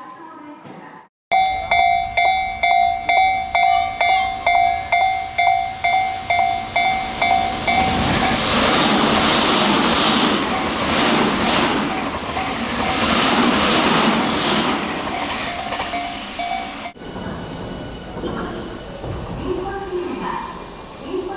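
Railway level-crossing alarm ringing in quick, evenly repeated dings, about two and a half a second. Then a commuter train passes close by with a loud rush and the clatter of its wheels over the rail joints, the crossing alarm still faintly ringing behind it. The sound cuts off suddenly near the end.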